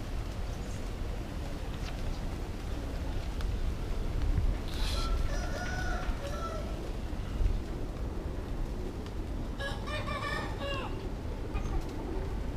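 Two drawn-out bird calls, the first about five seconds in and the second near ten seconds, each lasting a second or more and falling in pitch at its end. They sound over a steady low rumble.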